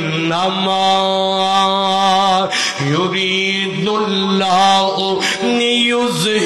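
A man's voice chanting in long, drawn-out melodic notes, each held for about two and a half seconds, the pitch stepping higher near the end.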